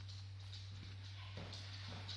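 Footsteps of a dog and a person on a hard floor: a few light, irregular taps, most of them in the second half, over a steady low hum.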